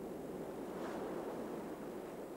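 Steady rush of wind and choppy sea water, with no distinct events.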